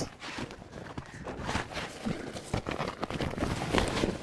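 A fabric drift anchor (sea anchor) rustling and crinkling as it is pulled from its bag and unfolded by hand, with uneven crackles and soft knocks.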